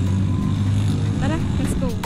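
A steady low motor hum, with a brief voice about a second in.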